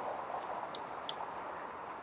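Steady hiss of outdoor background noise, with a few faint, short, high chirps in the first second or so.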